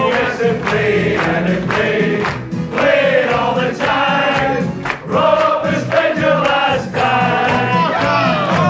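A man singing live through a PA microphone over a backing track with a steady beat, with voices from the room singing along.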